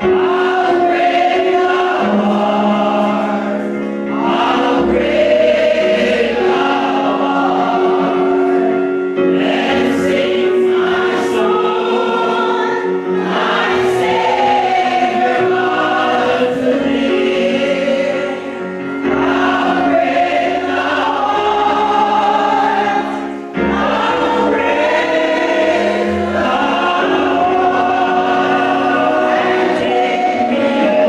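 Church congregation singing a hymn together, many men's and women's voices, with brief breaks between sung lines.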